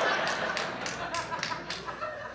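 Small club audience laughing with scattered claps after a punchline. The laughter and clapping fade away over the two seconds.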